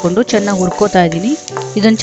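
Peanuts and chana dal sizzling as they fry in hot oil, stirred with a metal spatula. A pitched voice sounds over the frying throughout.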